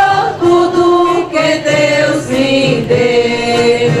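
Voices singing a hymn during Catholic Mass, the melody moving between notes and holding some of them long.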